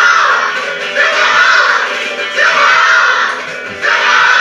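A group of children chanting "Step off!" in unison over electric guitar, about one loud shout every second and a half.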